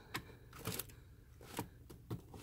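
Clear plastic storage drawer being slid open by hand, with a handful of faint clicks and light scrapes as it moves.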